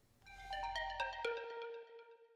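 Short chiming audio-logo jingle: a quick run of a few bell-like notes, the last one lower and left ringing until it fades near the end.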